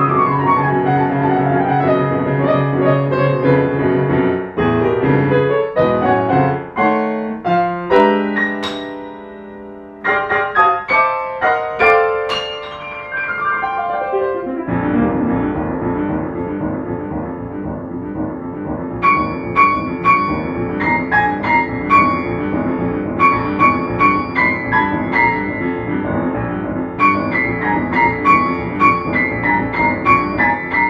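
Grand piano played solo: a falling run of notes at the start, a brief lull around ten seconds where the notes die away, then a steady, rhythmic passage of repeated chords with recurring high notes from about fifteen seconds.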